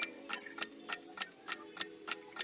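Countdown-clock ticking sound effect, fast and even at about five ticks a second, over a faint held musical tone.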